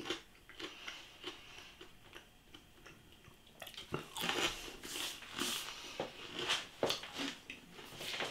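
A person biting into a piece of pizza and chewing it with the mouth close to the microphone. Only a few faint clicks at first; the bite comes about halfway in, followed by irregular chewing.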